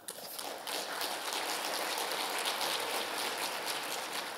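Audience applauding, breaking out suddenly and keeping up steadily.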